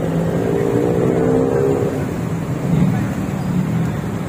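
Street traffic noise: car engines running with a steady low hum, mixed with people's voices.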